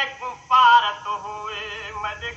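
A man chanting a Saraiki noha, a sung lament of Muharram mourning for Imam Hussain, in long wavering held notes with a brief break about half a second in. The sound is slightly dull, as on an old radio recording.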